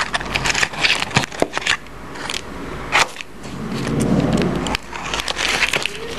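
Foil butter wrapper crinkling and a metal teaspoon scraping into a block of butter: irregular crackles and clicks, busiest in the first couple of seconds, with one sharp click about halfway through.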